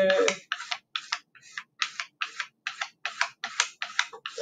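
A potter's rib scraping across a soft clay slab in quick back-and-forth strokes, about three a second. The rib is compressing the slab's surface so it will bend without cracking.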